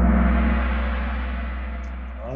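A quiz game's gong sound effect, marking the end of the question timer and the answer reveal, ringing and slowly fading away.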